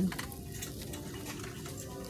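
Quiet, steady room tone of a shop floor: a low even hum with a few faint ticks.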